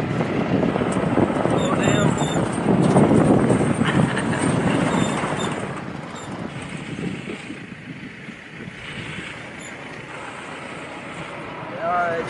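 Wind rushing over a microphone held outside the window of a moving jeep-style vehicle, with the vehicle's engine and tyre noise beneath it. The roar is loudest for the first half and eases off after about six seconds.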